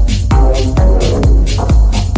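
Minimal techno playing: a steady kick drum at about two beats a second, with hi-hats between the beats over sustained synth tones.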